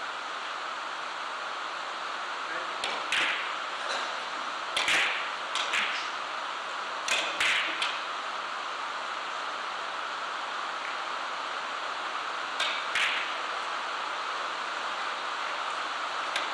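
A three-cushion carom billiards shot: the cue striking the cue ball about three seconds in, then a quick series of sharp clicks as the balls strike each other and the cushions, with two more clicks several seconds later as the balls finish their run. A steady hiss of hall background runs underneath.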